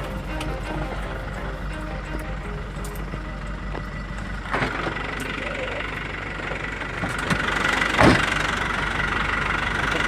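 A vehicle's engine running steadily as it drives along a road, heard from inside the cab. About eight seconds in there is a single sharp knock, the loudest sound.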